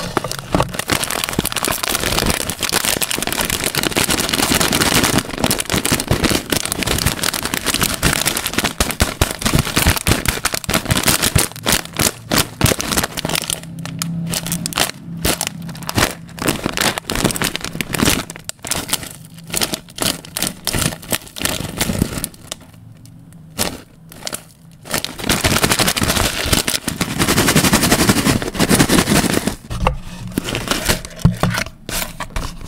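Close-miked crinkling and crumpling of a foil pouch squeezed in the hands: a dense run of sharp crackles, dropping off for a few seconds about three-quarters of the way through, then loud again near the end.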